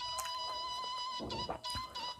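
Faint building work from next door: a steady high whine that breaks off briefly just past halfway, with a few knocks.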